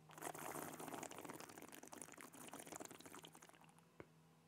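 A sip of Glenmorangie Dornoch single malt being swished around the mouth: a faint wet, crackly slurping that starts just after the sip and dies away after about three and a half seconds.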